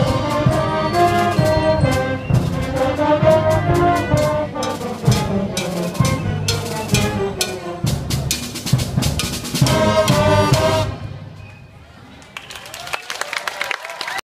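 Student concert band playing, brass chords over bass drum and snare strikes. It ends on a held chord and cuts off about eleven seconds in, leaving only faint sound.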